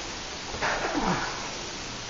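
A short vocal sound with a falling pitch, a little over half a second in, over a steady background hiss.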